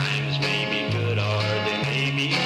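Country-style music: acoustic guitar played over a bass guitar, with the bass notes changing about once a second.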